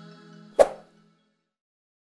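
Last held notes of background music fading out, then one short, sharp pop-like click about half a second in: a subscribe-button click sound effect.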